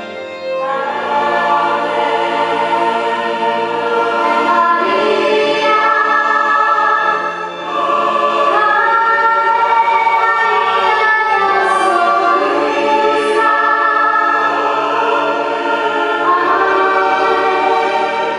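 Mixed choir of women's and men's voices singing a sacred piece, coming in loudly about half a second in.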